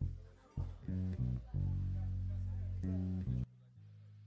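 Bass guitar playing low notes with guitar, including one long held note in the middle. Near the end the sound drops off abruptly to quieter, softer bass notes.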